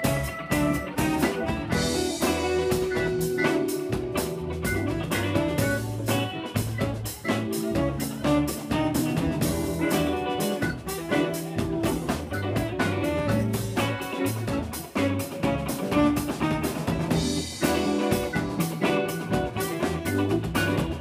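A live band playing an instrumental blues-rock jam: electric guitars and bass over a drum kit keeping a steady beat, with saxophone.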